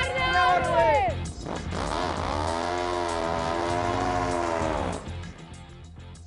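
Motorcycles riding past close by: their engine note falls in pitch as they pass in the first second, then a steady pitched engine note holds for about three seconds before dying away. Guitar music plays underneath throughout.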